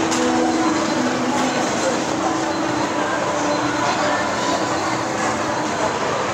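Shopping-mall ambience: a steady hubbub of indistinct voices over a continuous background rumble and hum.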